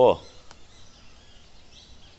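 A man's single short spoken word, then quiet outdoor background noise with no distinct sound.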